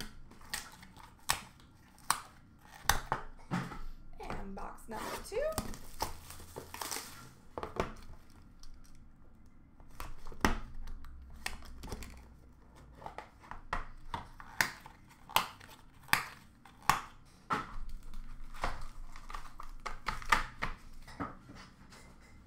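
Hands handling trading-card boxes and a hard plastic card case on a glass counter: a string of sharp clicks and knocks, with crinkling of packaging in between.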